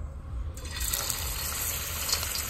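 Cooking oil poured into a hot aluminium kadai over a gas burner. The hiss comes in sharply about half a second in and holds steady.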